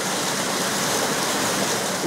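Turbulent water gushing and churning white into a concrete channel at a water works: a steady, even rushing.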